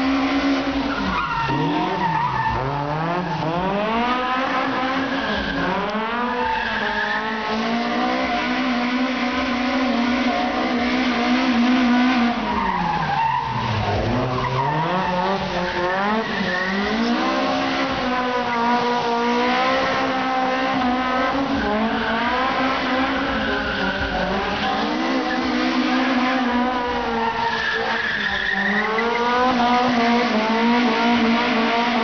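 Toyota AE86 Corolla drift car's engine revving hard and constantly rising and falling in pitch, with continuous tyre squeal and skidding as it slides. The revs dip sharply about halfway through before climbing again.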